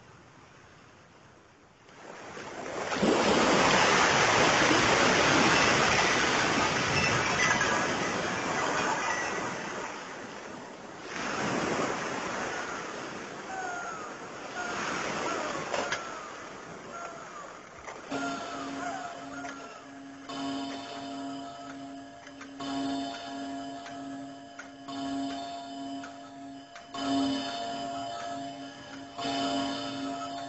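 Sea surf swelling up loudly a few seconds in and washing away, with a second wave, and seagulls crying over it. Music of sustained chords over a steady pulsing low note takes over in the second half.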